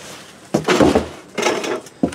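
Cardboard shipping box being pulled off a large inner box and set aside: two bursts of cardboard scraping and rubbing, one about half a second in and a shorter one about a second and a half in.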